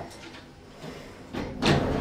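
Doors of a KONE EcoDisc passenger lift sliding open with a loud rushing slide that starts about one and a half seconds in, after a quieter stretch.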